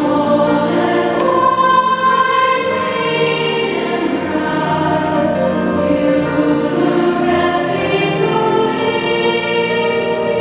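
A treble choir of children's and women's voices singing long held chords that shift slowly from one to the next.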